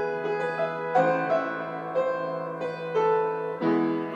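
Solo grand piano playing slow, sustained chords, a new chord struck about once a second and left ringing.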